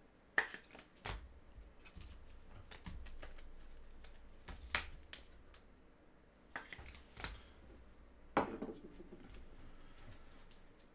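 Hands sorting trading cards on a tabletop: scattered sharp clacks and taps, the loudest about half a second in, near the middle and near the end.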